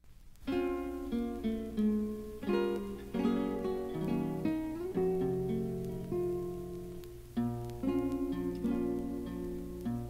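Instrumental opening of a Latin song played from a 1961 vinyl LP: acoustic guitar plucking a melody over held accompanying notes, starting about half a second in, with a steady low hum underneath.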